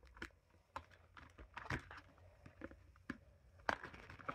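Scattered light clicks and taps from handling a thin metal craft sheet while small pieces are worked out of it.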